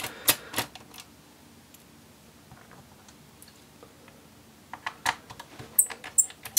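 Light clicks and taps of a small screwdriver and its screws on a laptop's bottom case: a few in the first half-second, a quiet stretch, then a few more about five seconds in.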